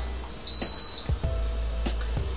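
Instant Pot Duo 60 electric pressure cooker giving a single high electronic beep about half a second long, the last of a short run of beeps. It signals that the programmed 18-minute high-pressure cook is starting. A steady low hum runs underneath.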